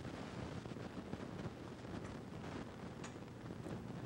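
Low, steady room noise with faint rustling and a few light ticks from hands crumbling packed brown sugar over a metal baking pan.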